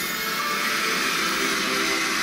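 A steady rushing hiss, an anime sound effect for a monster's body steaming as it reverts to human form, over faint background music.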